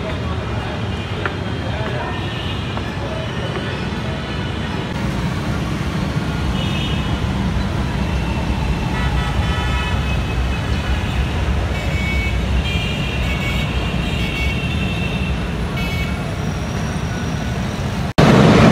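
Busy street traffic of auto-rickshaws, motorbikes and cars running in a steady rumble, with several horns beeping on and off through the middle.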